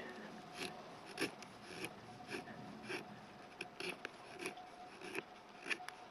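An N690 stainless steel fixed-blade knife (Tanev Family Knives T8) shaving curls off an old, dry birch stick to make a feather stick: faint, short scraping strokes, roughly one every half second to second.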